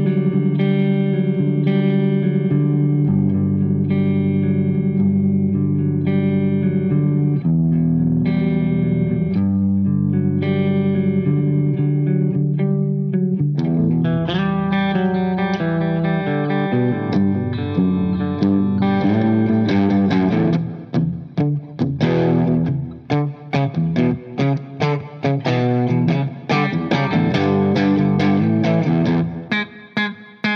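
1979 Gibson Les Paul KM electric guitar with uncovered cream T-top humbuckers, played clean through an amplifier. Held, ringing chords for about the first dozen seconds give way to quicker picked single-note lines, with short, clipped notes through the last third.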